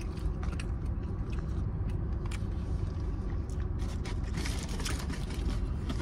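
Chewing, with small clicks and scrapes of a plastic spoon in a plastic takeout container and a louder rustling scrape about four and a half seconds in, over a steady low rumble inside a car.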